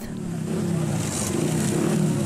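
Steady street noise dominated by a vehicle engine running, with a low, wavering hum.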